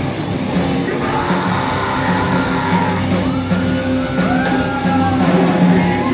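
Live rock band playing loud in a small club, guitars and drums with a singer shouting and singing over them.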